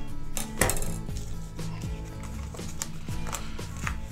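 Cutters clipping the wires of a greeting card's piezo disc: one sharp snip about half a second in, then a few lighter clicks and taps of handling. Soft background music plays under it.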